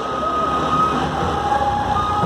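Motorbike engine running with road and wind noise as the rider slows down, with a steady high whine that steps down in pitch about halfway through.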